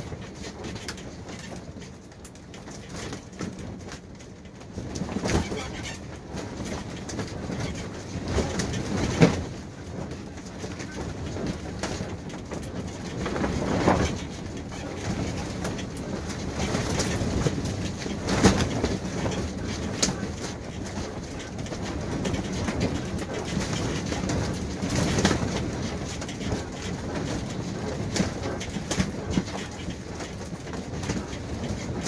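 Strong wind gusting against a pop-up camper's canvas walls, heard from inside, surging and easing, with sharp slaps and knocks as the camper is buffeted. The loudest knock comes about nine seconds in.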